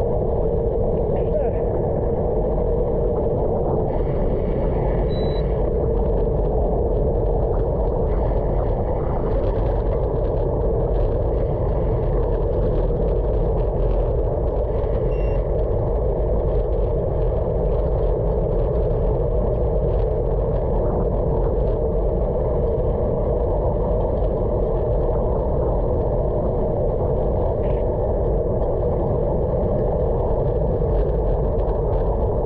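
Steady rush of wind and road noise from a camera mounted on a road bicycle riding on a wet road.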